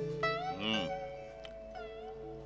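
Background music of held, sustained notes, with one short voice-like sound rising and falling about half a second in.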